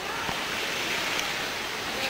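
Steady rush of flowing water, an even hiss that holds without a break.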